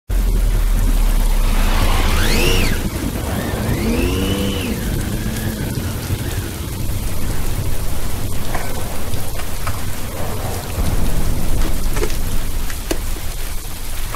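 Heavy rain pouring onto a wet street, a dense steady hiss over a deep rumble. A few wailing tones rise and fall between about two and five seconds in.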